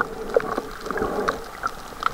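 Underwater reef sound picked up by a submerged camera: a steady muffled water noise with many short clicks and pops scattered irregularly through it.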